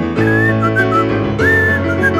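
A short whistled tune in two phrases over the song's steady instrumental backing. It is a whistled fill between sung lines of a children's song. The second phrase starts about halfway through with an upward slide to a high note, then steps down.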